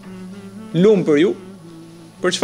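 A man's voice says one short phrase about a second in, its pitch rising and falling, over a steady low electrical buzz.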